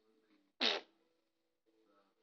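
A single short, loud blurt from a person, about half a second in, lasting a quarter of a second.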